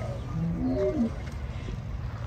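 A short, low-pitched animal call of a few notes, lasting under a second, near the start.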